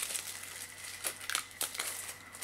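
Clear plastic shrink wrap crinkling as it is peeled off an album box, in a few short, sharp crackles.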